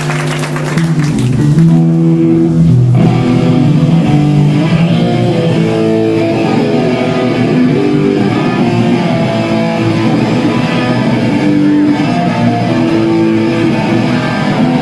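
Live hardcore punk band playing loud, guitar-led, with a riff of held notes that change every second or so. It grows louder about a second in.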